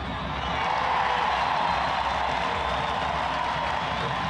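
Football stadium crowd noise that swells about a second in, as a shot goes in near the goal, and then holds at a steady din.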